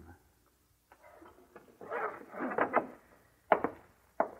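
Radio-drama sound effects of rummaging: a stretch of rustling and scraping, then a single sharp knock about three and a half seconds in.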